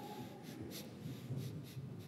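Soft, irregular footsteps and rustling as several people walk back to their pews, with small scuffs and shuffles.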